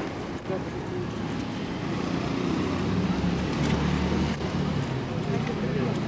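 Background chatter of people talking outdoors, mixed with road traffic. A vehicle engine's low hum grows louder about two seconds in.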